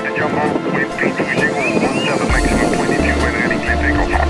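Jet airliner noise and a voice, with background music's pulsing bass beat coming in a little past halfway.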